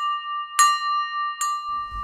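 A high, bell-like chime struck twice, under a second apart, each note ringing on steadily into the next.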